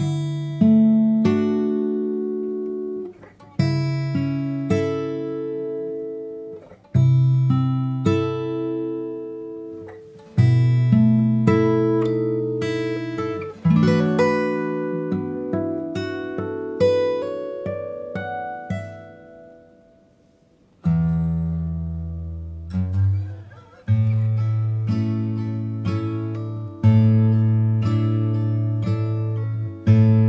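Steel-string acoustic guitar played slowly fingerstyle: plucked bass notes under ringing chords that die away between strokes. About halfway through comes a rising run of single notes, then a brief pause before lower chords resume.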